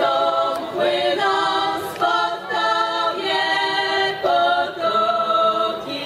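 A small group of women singing a Polish folk song a cappella, in phrases of long held notes with short breaks between them.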